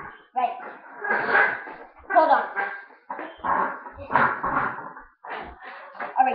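A person's voice close to the microphone in a run of loud phrases that the words cannot be made out of, with a few soft low bumps.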